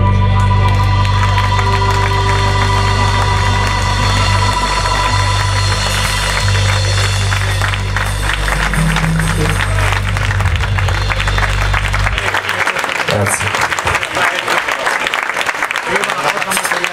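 Live blues-rock band ending a song on one long held chord, with bass, electric guitar, keyboard and crashing drums and cymbals. The chord cuts off about twelve seconds in and audience applause follows.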